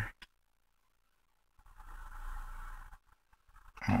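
A flat-blade screwdriver drawn along a fold in a paper dollar bill to sharpen the crease: one soft scrape lasting about a second and a half, midway, followed by a few faint ticks.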